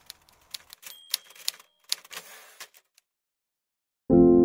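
Typewriter clacking: irregular sharp key strikes, with a short ringing tone about a second in, then a cut to silence about three seconds in.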